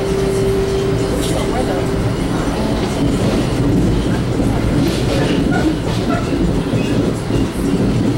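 Ride noise inside a 1982 Comet IIM passenger coach running at speed: a steady rumble of wheels on rail with a few faint clicks. A single steady tone is held until about two seconds in.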